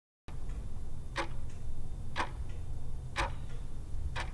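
Countdown timer sound effect: a clock ticking about once a second, with fainter ticks in between, over a low steady rumble.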